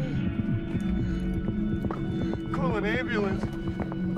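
Dramatic film score: a steady low drone under a dense run of fast knocking percussion. About two and a half seconds in, a wavering, wailing voice rises over it.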